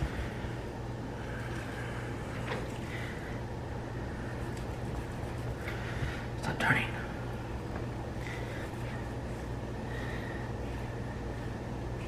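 Kitchen knife slicing fat off a raw brisket on a wooden cutting board, with a few faint knocks and scrapes, the most noticeable about halfway through. A steady low hum runs underneath.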